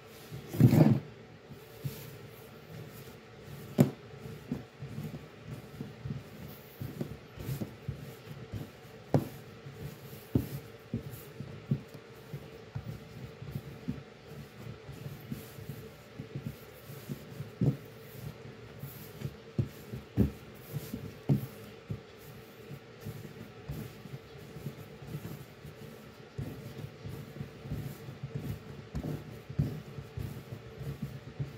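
Bread dough being kneaded by hand on a countertop: soft pushing and rubbing, with irregular thumps of the dough against the counter, the loudest about a second in.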